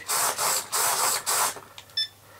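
Several hobby RC servos whirring in four quick back-and-forth bursts, driven by a multi-channel servo tester and drawing up to about three amps. Near the end the tester gives a short electronic beep as its button is pressed.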